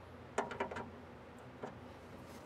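A few short metallic clicks from the chrome handle of a 1967 Mustang fastback's fold-down trap door being fitted and worked by hand. They come as a quick cluster about half a second in, then one more click near the end.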